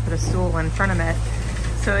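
Talking over a steady low drone, typical of a boat's engine running, heard from inside the catamaran's cabin.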